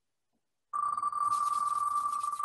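Dead silence, then about two-thirds of a second in, an online name-picker wheel's spin sound starts: a rapid run of electronic ticks with a steady ringing pitch.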